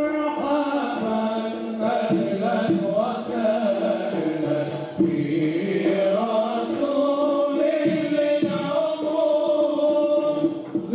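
Voices chanting a slow melodic song, with long held notes that waver and glide.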